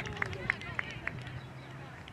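Faint voices of players and spectators calling across the field. A few short sharp clicks come in the first second, and a low steady hum follows about a second in.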